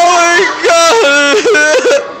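A loud human voice singing or whooping without words, on held notes that jump suddenly up and down between a low and a high pitch in a yodel-like way, several quick jumps near the end.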